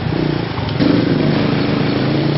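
Motorcycle engine running close by, getting louder about a second in.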